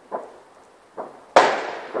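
New Year fireworks going off: two duller bangs, then a much louder, sharp bang about a second and a half in that echoes and dies away.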